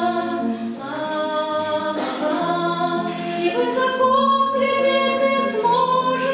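A group of voices singing a song together, with long held notes.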